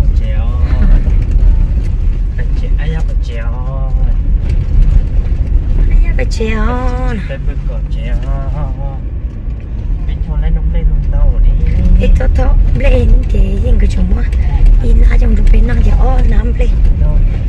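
Vehicle driving slowly over a rough dirt road, heard from inside the cabin: a steady low rumble of engine and tyres, with voices over it.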